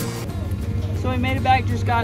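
A person talking, starting about a second in, over a steady low rumble.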